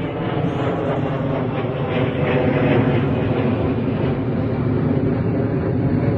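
A loud, steady engine drone that holds unbroken throughout, made of a hum of many evenly spaced tones.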